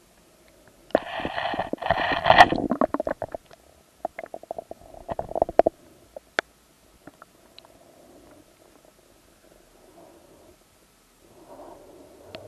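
Underwater sound heard through an action camera's sealed waterproof case: muffled gurgling and surging of sea water, loudest in two bursts in the first half. Sharp clicks run through it, and it fades to a faint murmur after about six seconds.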